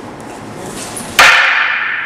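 A single loud, sharp clack of two wooden fighting staffs striking each other about a second in: a sideways strike met by a sideways block. The crack rings on briefly as it dies away.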